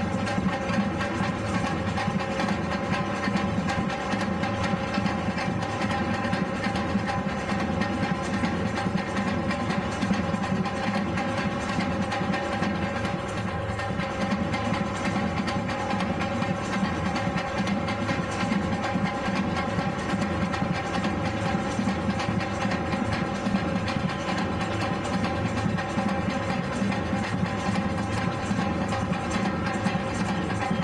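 Batucada samba drum group playing a continuous rhythm: large surdo bass drums on stands and sling-carried snare drums struck with sticks, at a steady, even loudness throughout.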